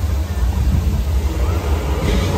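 Deep, steady rumble from an artificial volcano show, building just before its flame eruption.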